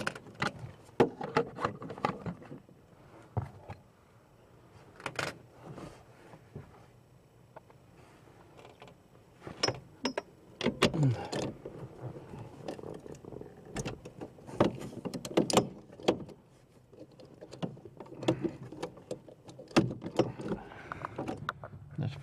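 Scattered clicks, knocks and rattles of hand tools and metal parts being handled under a truck's dashboard, irregular and without a steady rhythm, with quieter stretches between.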